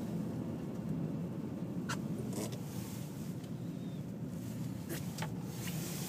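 Steady low road and engine rumble of a slowly moving car, heard from inside the cabin, with a few faint clicks about two seconds in and again near five seconds.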